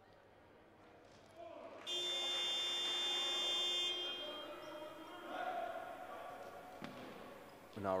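Basketball scoreboard buzzer sounding one long steady tone for about two seconds, starting about two seconds in: the signal that the timeout is over. Voices murmur in the hall around it.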